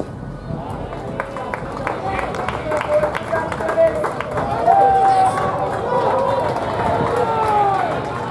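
A cricket bat cracks against the ball at the very start. Players then shout and call across the field as the batters run between the wickets, with scattered sharp claps and clicks and long, held shouts in the second half.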